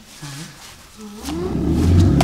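A deep animal roar, growling and building in loudness from about a second in, like a big cat's roar.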